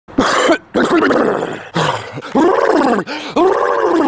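A young man's voice making a loud series of about six wordless, drawn-out vocal sounds. The pitch of each one rises and falls, with short breaks between them.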